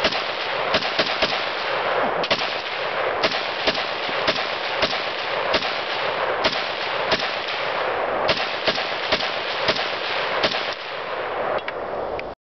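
Romanian WASR AK-74 rifle in 5.45x39 firing a long string of rapid semi-automatic shots, about two to three a second with a few brief pauses. Each shot echoes, so the string runs together into a continuous ringing, and the shooting stops just before the end.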